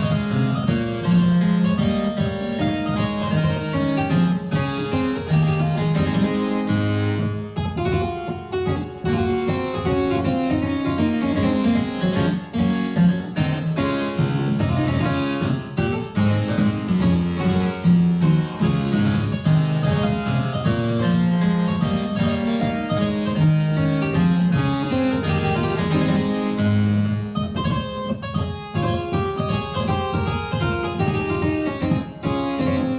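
Solo harpsichord playing a French Baroque gigue in D major, a quick dance in triple meter with busy running notes.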